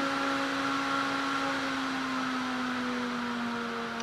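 Small square DC cooling fan running fast, about 3,200 RPM, a steady whir of air with a steady tone in it. Its pitch sags a little near the end as its supply voltage is turned down and it slows.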